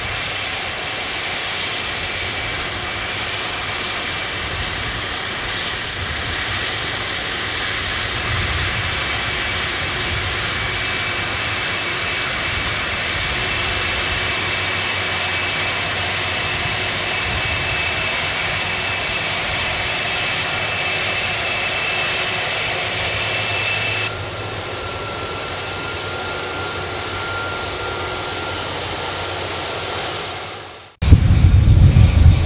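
Boeing 747-400's Rolls-Royce RB211 turbofans running at taxi power: a steady jet rush with high whining tones over it. About 24 seconds in, the sound changes abruptly to a slightly quieter rush with a lower whine.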